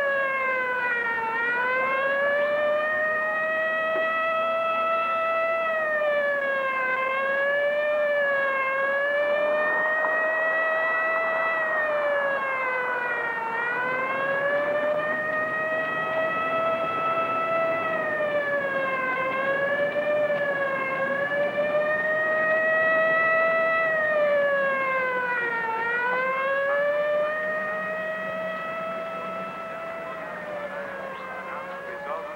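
Emergency vehicle siren wailing, its pitch dipping and climbing back every few seconds, getting fainter near the end.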